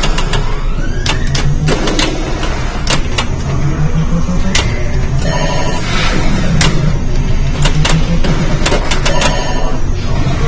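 Pinball machine in play, apparently a Gottlieb Black Hole: irregular sharp clacks of flippers, solenoids and the ball striking, with short electronic beeping sound effects about halfway through and again near the end. A steady low hum of the noisy arcade runs underneath.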